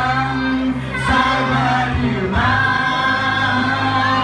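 A man singing a song into a microphone through a PA, over backing music with a steady bass line. He holds long notes, and other voices in the room sing along.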